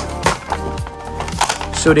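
Cardboard toy box and clear plastic packaging being pulled open by hand: irregular crackles and snaps, over background music.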